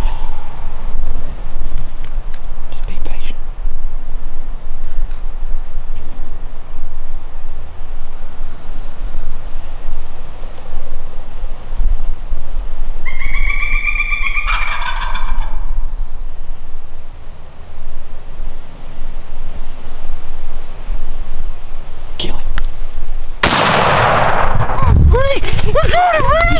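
A wild turkey gobbler gobbles once at close range, a rattling call of about two seconds just past the middle. Near the end a single shotgun blast, the loudest thing here, cracks and rings on.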